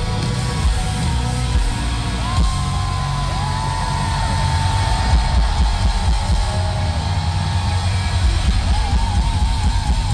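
Rock band playing loud and live on distorted electric guitars, bass and drums. A long high note slides up about two seconds in, holds, and wavers near the end.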